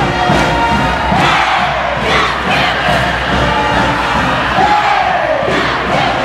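Large crowd of students cheering and shouting in a gymnasium, a continuous din with a couple of long, falling whoops standing out above it.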